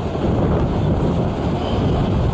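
Strong wind buffeting the microphone, a steady low rumbling noise that mostly covers the sound of a passing narrow-gauge steam train's coaches.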